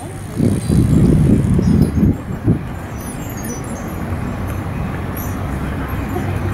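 Outdoor background rumble, uneven and heavier for the first two and a half seconds, then settling into a steadier low hum with a few faint high chirps.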